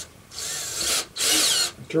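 Cordless drill with a step bit in its chuck, run briefly twice without load, the second burst louder.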